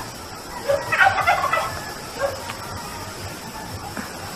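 Domestic fowl calling: a quick jumble of short calls about a second in, then a couple of fainter single calls.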